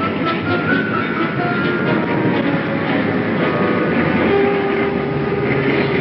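Old film soundtrack: a dense, steady rumble and rattle like a moving train, with orchestral music mixed under it. A held tone joins about two-thirds of the way through.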